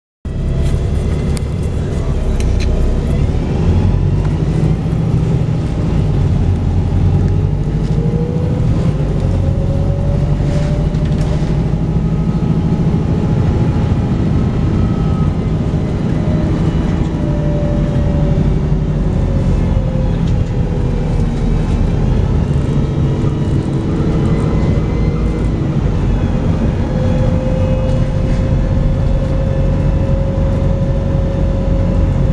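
Volvo B5TL double-decker bus heard from inside, its four-cylinder diesel engine running under way with a steady low rumble, and a whine that rises and falls as the bus accelerates and eases off.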